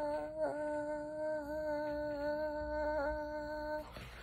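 A woman's voice holding one long sung note at a steady pitch, which cuts off shortly before the end.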